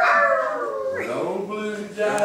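Human voices howling like a hound dog: a long falling howl, then a second one starting about a second in.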